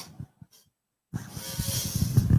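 Handling noise close to the microphone: a few soft knocks, a short pause, then a louder rustling that starts about a second in.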